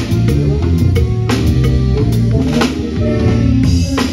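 Drum kit played live in a band: regular snare, bass drum and cymbal hits over sustained low notes from the rest of the band.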